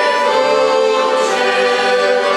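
Voices singing a Christian song together, accompanied by accordions and violin.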